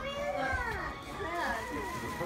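Several voices, children's among them, talking at once: indistinct family chatter with no other clear sound.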